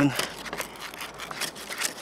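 Sandpaper scratching against the end of a wooden skewer as the skewer is rotated inside a cone of sandpaper, sanding it to an even taper; an irregular, scratchy rubbing.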